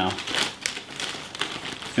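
Clear plastic storage bag of lettuce crinkling and rustling as hands work a paper towel into it, with a few sharper crackles about half a second in.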